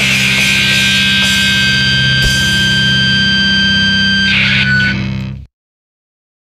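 Distorted electric guitar chord held at the end of a crust punk song, ringing out with steady high tones, then fading and cutting off to silence about five and a half seconds in.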